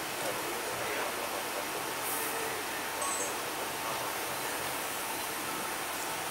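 Steady room noise of a large hall with amplified microphones: an even hiss with no speech, and a couple of faint, brief high-pitched sounds about two and three seconds in.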